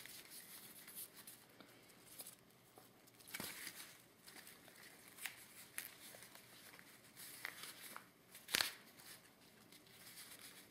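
Faint rustling and crinkling of a cotton handkerchief and ribbon handled by fingers while a bow is tied and shaped, with a few sharper rustles, the loudest about eight and a half seconds in.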